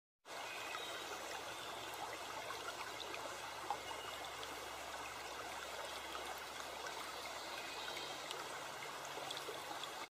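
A small forest stream running over rocks: a steady, even trickle and babble of water.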